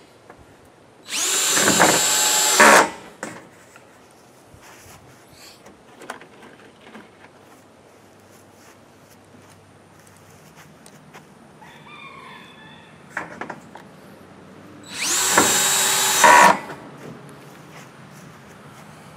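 Cordless drill driving two self-tapping metal roofing screws with rubber washers into a corrugated galvanized steel sheet. Each run lasts about a second and a half: the first starts about a second in, the second near the end.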